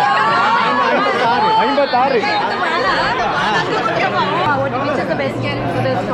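A crowd of many people talking at once at close range, their overlapping men's, women's and children's voices forming a steady chatter in which no single speaker stands out.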